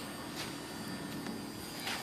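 Quiet background noise with a faint steady hum, broken by two light clicks, one about half a second in and one near the end.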